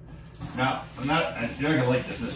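A kitchen tap turned on about half a second in, water running steadily into the sink while a man talks over it.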